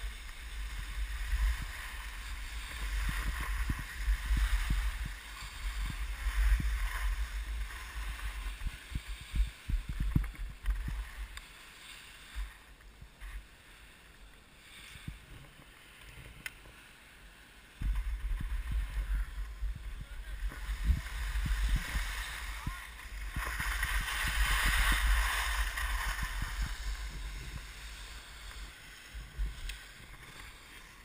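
Skis sliding and scraping over packed snow on a downhill run, with wind buffeting the microphone as a deep rumble. The rumble and scraping fade for several seconds in the middle while the skier slows, then come back abruptly as the run picks up again.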